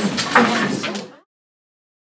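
Room bustle as an audience starts to move: indistinct voices mixed with knocks and clatter. It cuts off abruptly about a second in, and silence follows.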